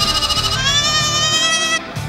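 A lamb bleating over background music: one long call that rises slightly and cuts off sharply just before the end.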